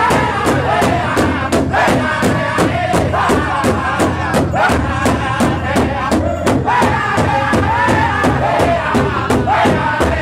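Pow wow drum group: several men striking one large shared drum with drumsticks in a steady, even beat while singing loudly together.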